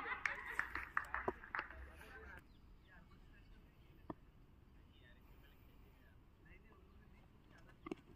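Distant voices of players calling out for about two seconds, then quiet open-air ambience with a few faint clicks. A sharp knock comes near the end as the batter plays at the ball.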